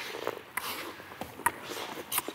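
Table tennis ball struck with paddles in a rally: a few sharp clicks about a second apart, the loudest about one and a half seconds in.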